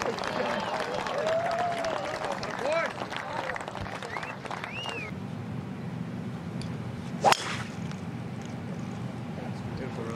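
Crowd cheering and whistling, dying away over the first five seconds; then, about seven seconds in, a single sharp crack of a golf club striking the ball off the tee.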